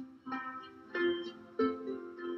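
An ensemble of lever harps (Derwent Explorer 34 and Adventurer 20) playing a tune together: plucked notes and chords, struck about every two-thirds of a second, each ringing on into the next.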